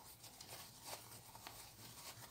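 Near silence: a faint rustle of cloth being handled.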